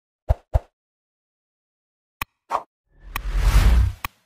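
Intro-animation sound effects: two quick plops, then a click and another plop, then a whoosh with a deep rumble that swells over the last second.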